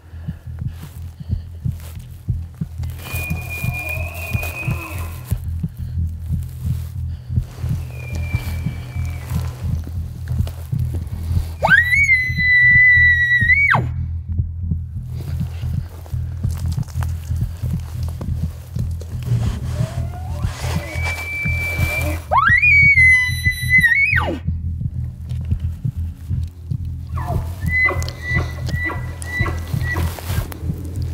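Elk bugles: two loud ones, each a whistle that climbs steeply, holds high for about a second and a half and then drops, about halfway through and again about ten seconds later, with fainter, more distant bugles between them. A low steady music bed runs underneath.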